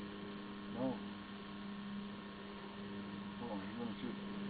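A steady electrical hum, one low tone with fainter overtones, under a short quiet spoken word about a second in.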